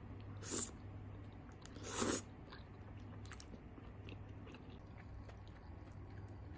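A person eating thick udon noodles: two short slurps, about half a second and two seconds in, then soft chewing with a few small clicks.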